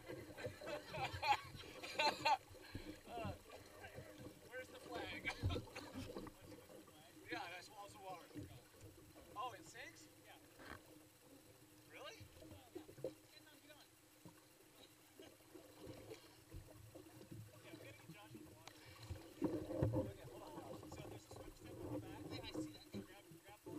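Quiet talking between people in the water, over water lapping and splashing close to the microphone, with a faint steady hum underneath.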